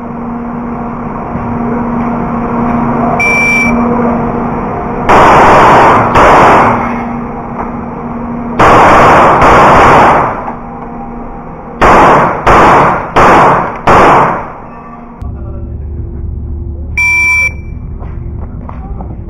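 Electronic shot-timer start beep, then a CZ 75 Shadow pistol fires about eight shots in four pairs of two, each shot loud and clipped with a ringing tail in an indoor range. Another timer beep comes near the end.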